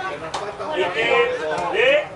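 Voices of people shouting and calling out, with no clear words.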